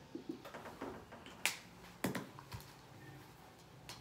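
Marker pen on a whiteboard: faint writing strokes and a few sharp clicks and taps. The clearest clicks come about a second and a half in and around two seconds.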